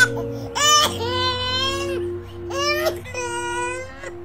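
An infant crying: a short rising cry about a second in, then two long held wails, each rising at its start and then held steady in pitch. Steady background music tones run beneath.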